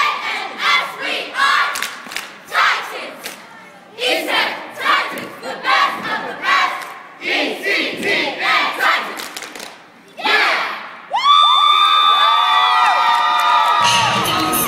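A cheerleading squad shouting a unison cheer in short, rhythmic bursts. About eleven seconds in, the crowd breaks into loud, sustained cheering and screaming.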